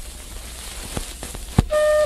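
Steady recording hiss in the silent gap between two hymns, with two faint clicks. Near the end a held flute-like note begins, the start of the next hymn's introduction.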